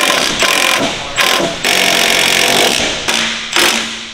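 A steel hammer striking repeatedly, driving a sway bar arm onto the bar's splined end; several blows with the metal ringing between them.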